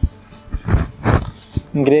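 Rustling and soft knocks of folded linen fabric as a saree is laid down on a table, then a woman's voice near the end.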